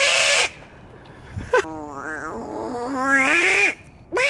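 A loud, animal-like vocal call: a short sharp cry right at the start, then about a second later a long wavering call lasting about two seconds that rises in pitch near its end.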